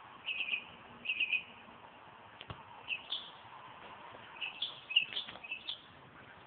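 A bird chirping in short clusters of quick high notes, with several bursts a second or so apart and a busier run near the end. There is one brief click about two and a half seconds in.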